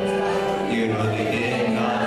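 Live pop song: a man singing through the PA over keyboard accompaniment with a sustained bass line, heard from within the crowd in a hall.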